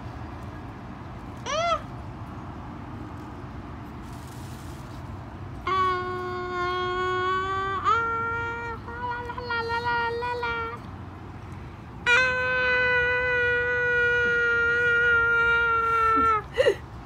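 A young girl singing long, held "ahh" notes: a short rising-and-falling "ah" near the start, then three sustained notes, each a little higher than the last, the final one the loudest and held about four seconds.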